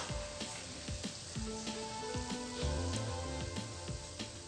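Hot oil sizzling in an aluminium kadai, with scattered small crackles as tempering seeds fry in it.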